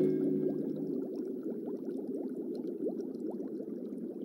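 Aquarium bubbling: a steady stream of small air bubbles gurgling. The tail of a music cue dies away in the first second.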